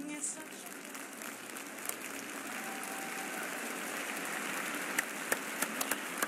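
Arena crowd applauding: a steady wash of clapping that takes over as the last sung note of the music cuts off, with a few sharper, closer claps near the end.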